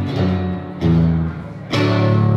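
Metal-bodied resonator guitar played live: a chord rings and dies away, a fresh low note is struck a little before the middle, and a louder chord is struck near the end.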